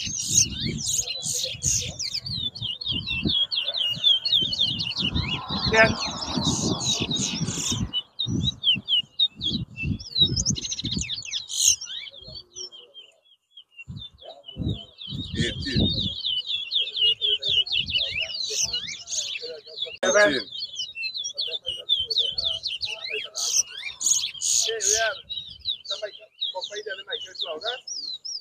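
Caged male twa-twa (large-billed seed finch) singing competition song: long runs of rapid, high chirping notes, broken by a pause about halfway through. Low thumping noise runs under the first third.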